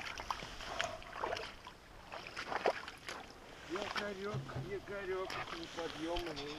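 Light knocks and clicks from a small boat anchor and its rope being handled against the side of a boat, with water lapping around the boat and a man's wading legs. A faint voice comes in during the second half.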